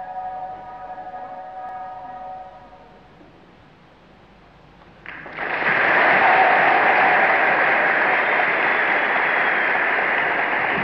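The band's final held chord fades away over the first two or three seconds; about five seconds in, audience applause breaks out suddenly and carries on steadily, louder than the music was.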